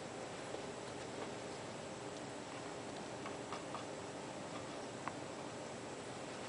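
Faint room tone: a steady hiss with a faint high whine and about six soft, scattered ticks.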